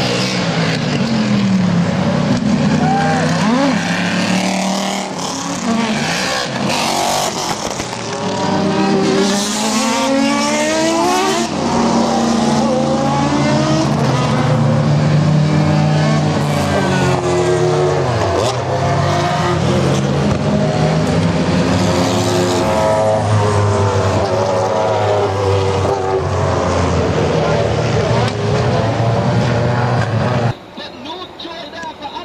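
A string of sports racing cars passing at speed one after another, their engine notes rising and falling in pitch as each car goes by.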